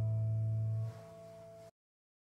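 The last held chord of an acoustic folk trio (acoustic guitar, fiddle and bass) ringing out. The low bass note stops about a second in, the upper notes ring on quietly for a moment, then the sound cuts off abruptly.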